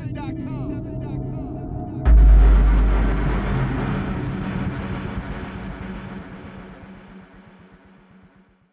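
Logo-intro sound effect: a sudden deep boom about two seconds in, over a low music bed, followed by a long rumbling tail that fades away slowly.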